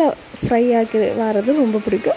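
A woman's voice speaking; no other sound stands out.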